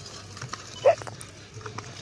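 A single short, sharp animal call just under a second in, over a low steady hum.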